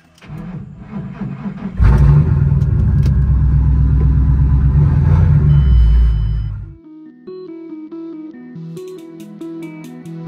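A Ford Mustang's engine is started: a short crank, then it catches about two seconds in and runs loud and steady with a deep rumble. It stops abruptly around seven seconds in, giving way to background music with plucked guitar-like notes.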